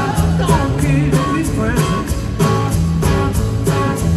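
Live rock band playing through a stadium PA, heard from the crowd: a steady drum beat, bass and electric guitar, with a male lead vocal.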